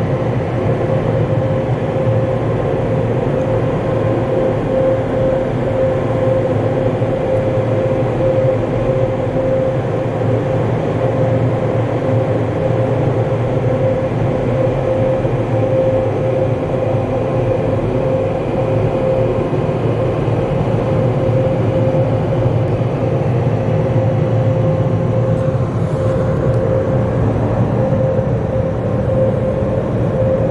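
Car wash dryer blowers running steadily, a loud constant rush of air with a steady hum under it, heard from inside the car's cabin.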